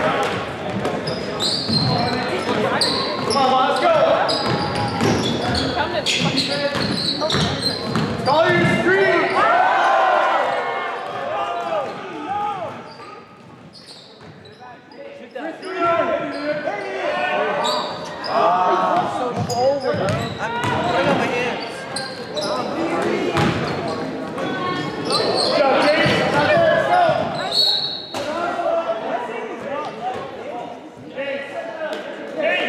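A basketball bouncing on a gym floor amid many voices talking and calling out, the whole echoing in a large hall, with a brief lull about halfway through.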